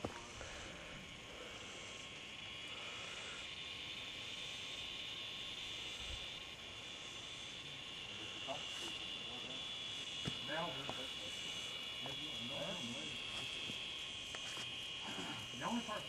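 A steady, high-pitched drone of insects, with faint voices in the background about nine seconds in and again near the end.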